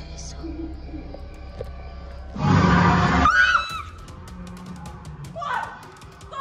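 Eerie background music with a steady hum; about two and a half seconds in, a loud sudden noise lasting about a second runs straight into a short high-pitched scream from a woman. After that come quick knocks and rustles of hurried movement.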